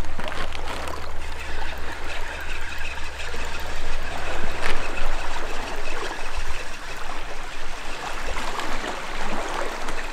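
Gentle sea water lapping and trickling against a stony shoreline.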